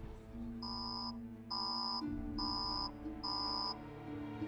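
Four short electronic beeps, evenly spaced just under a second apart, over soft sustained background music.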